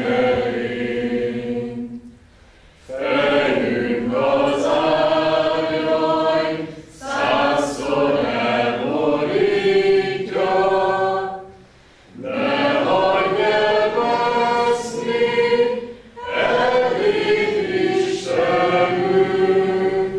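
A mixed group of women's and men's voices singing a slow song together, with long held notes. The phrases are broken by short pauses for breath about every four to five seconds.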